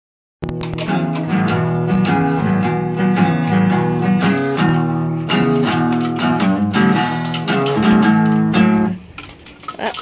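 Steel-string acoustic guitar played in a steady rhythm of strummed and picked chords. It starts about half a second in and stops about a second before the end.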